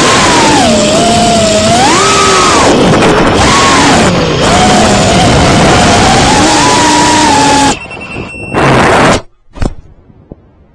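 Geprc Cinequeen 4K FPV quadcopter's brushless motors and propellers whining loudly, the pitch rising and falling with the throttle. Near the end the whine drops, surges once more and cuts out suddenly, followed by a couple of sharp knocks as the drone tumbles into the grass in a crash.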